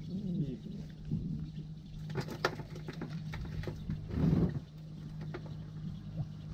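Steady low hum of a fishing boat's engine running at idle, with a few sharp clicks about two seconds in and a brief louder knock about four seconds in.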